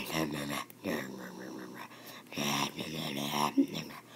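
A child's voice making growling, wordless fight sound effects in about three stretches of vocalising.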